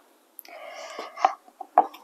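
A vinyl record sliding out of its paper sleeve with a short rustle, then two sharp knocks as it is handled onto the turntable platter.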